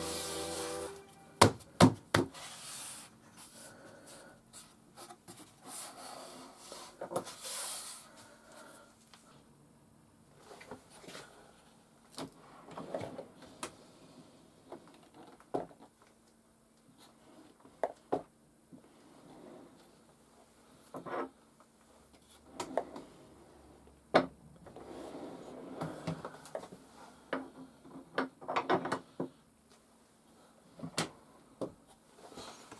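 Workshop handling noises: a few sharp knocks about one and a half to two seconds in, then scattered knocks and wood rubbing and sliding as a wooden drawer of tools is rummaged through and pushed shut.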